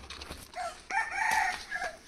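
A rooster crowing once: a short opening note, then a long arched call lasting about a second.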